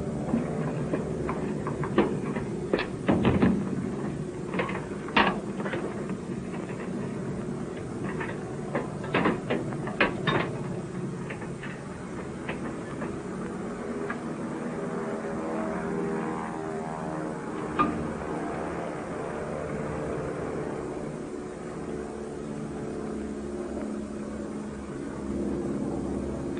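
A single-engine aircraft engine running steadily on the ground, with scattered knocks and clicks over it during the first ten seconds or so.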